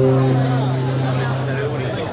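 A low note held steady through the live-stage sound system, with audience voices talking over it.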